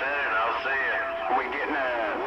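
Several voices talking over one another as received through a CB radio's speaker, thin and hissy, with a short steady whistle tone about half a second in.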